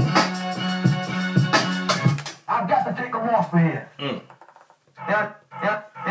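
An electronic beat played from a drum machine through small studio monitors, a held bass note under regular drum hits, cuts off about two seconds in. Quiet talking follows.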